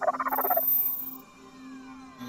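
A character's voice speaking an invented, non-English language for about the first half second, over a steady electronic hum. From about a second in, several electronic tones glide downward.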